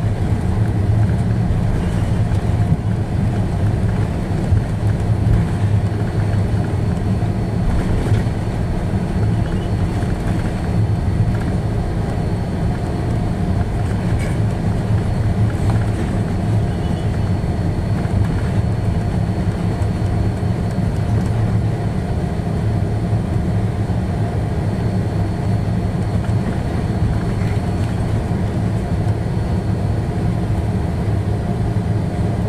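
Steady cabin noise of an Airbus A330 taxiing on the ground: a low rumble of engines and airframe, with a faint steady high tone above it.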